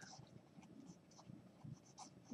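Faint scratching of a felt-tip pen writing a word on paper.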